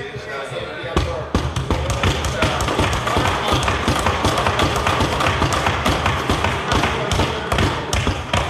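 Many members thumping their desks in approval: a dense run of irregular thuds from about a second in, with voices of the chamber underneath.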